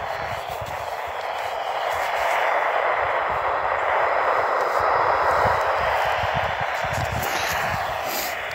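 Static hiss from a Midland weather radio's small speaker, tuned to a NOAA weather channel with no clear signal coming through; the hiss swells in the middle and eases near the end.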